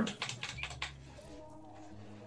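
A quick run of computer keyboard clicks in the first second, then near quiet.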